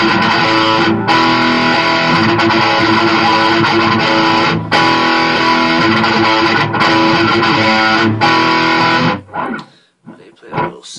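Electric guitar played alone: a loud, continuous riff with short breaks about one, four and a half and eight seconds in. The riff stops just after nine seconds, and a few quieter single notes follow.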